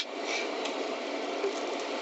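A sharp click right at the start, then the steady noise of a car's cabin: the vehicle is running with its interior noise going.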